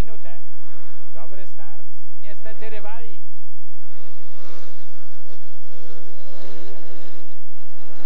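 Four speedway motorcycles' 500 cc single-cylinder engines racing away from the start and through the first bend, heard together as a dense, steady drone. A voice speaks over them in the first three seconds.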